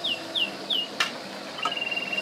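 A small bird chirping: a quick series of short, high, falling notes, about three a second, then one held high note near the end. A single sharp click comes about halfway.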